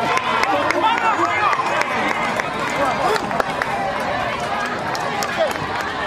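Crowd of football spectators shouting and calling over one another, many voices at once, as the players celebrate a goal.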